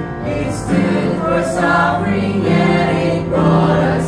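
Mixed choir of women's and men's voices singing a hymn together in harmony, holding long notes, with a few sharp 's' sounds from the words.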